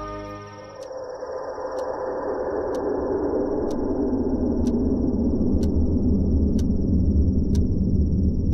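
A clock ticking about once a second over a low rumbling drone that slowly swells, with a steady high whine above it. Soft music fades out in the first second.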